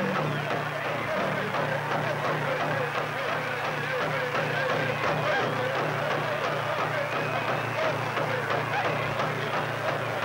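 Music for a dance: a steady, evenly pulsing drumbeat under many voices chanting together.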